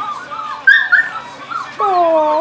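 Shetland sheepdog puppies whimpering and yipping: a quick string of short, high whines, the loudest about two-thirds of a second in. Near the end comes a longer, lower cry that drops slightly in pitch.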